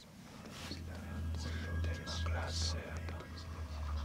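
Indistinct whispering with sharp hissing sibilants, over a low droning score that swells in about half a second in.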